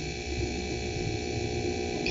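Steady low hum with a faint hiss: the recording's background noise in a pause between spoken phrases.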